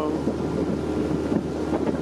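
Motorboat engine running steadily with the boat under way, wind buffeting the microphone.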